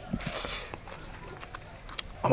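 A person eating rice and curry by hand: a short noisy slurp as the mouthful goes in, then a few soft wet chewing clicks.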